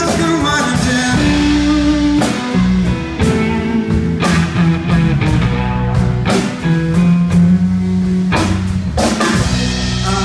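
Live blues-rock band playing a slow blues: electric guitars, bass and drum kit, with long held guitar notes over steady drum and cymbal hits.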